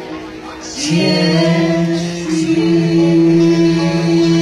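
A small mixed group of singers, backed by an acoustic guitar, hold one long sustained chord together for the song's closing note. It comes in about a second in, after a brief softer moment.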